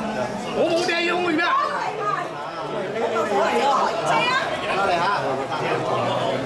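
Crowd chatter: many people talking at once, their voices overlapping so that no single speaker stands out.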